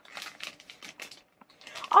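Plastic pouch being handled, giving a quick, irregular run of crinkles and light clicks.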